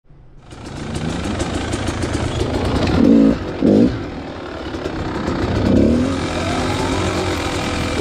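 Dirt bike engine running along a trail, with two loud throttle bursts about three seconds in, another just before six seconds, and a rise in revs near the end.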